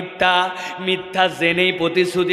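A man preaching in a sing-song, chanting delivery, his voice held on a level pitch between syllables.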